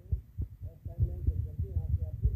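Muffled devotional song playing: a singing voice over strong, pulsing deep bass.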